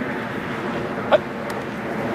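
A single sharp shouted "Hut!" about a second in, the snap call that starts a football play, over a steady outdoor background hiss.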